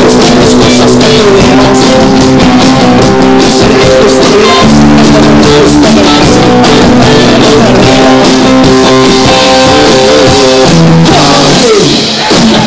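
Live rock band playing an instrumental passage: electric guitars, electric bass and drum kit, loud and continuous. Near the end a note slides down in pitch.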